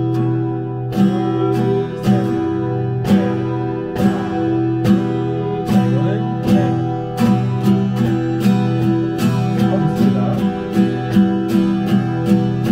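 Acoustic guitar strumming a repeated E minor chord in slow, even strokes, closer together in the second half.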